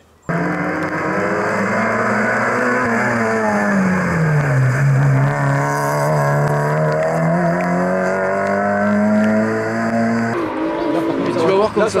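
Rally car engine running at high revs, its note falling about four seconds in as the car slows for a wet bend, holding low, then climbing again as it accelerates away. About ten seconds in the sound cuts abruptly to a choppier engine noise.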